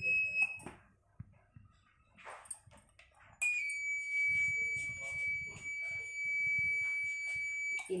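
Electronic buzzer of a model vehicle anti-theft alarm sounding a steady high-pitched tone. It cuts off about half a second in and starts again about three and a half seconds in, holding until just before the end.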